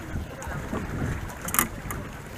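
Wind rumbling on the microphone over boat-deck ambience, with a sharp click about one and a half seconds in and a few fainter ticks as the fish and hook are handled.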